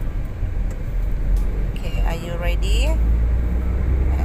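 A steady low rumble throughout, with a short bit of a voice about two seconds in.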